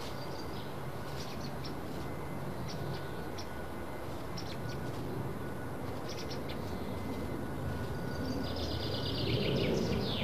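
Small birds chirping: short high chirps here and there and a longer warbling phrase near the end, over steady outdoor background noise that swells slightly toward the end.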